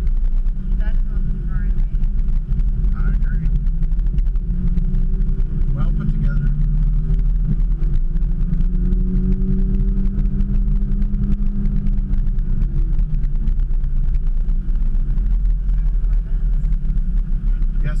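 Car engine running at low speed, heard from inside the cabin as the car creeps along, with a steady low rumble throughout. Its pitch rises a little partway through and settles back shortly after the middle.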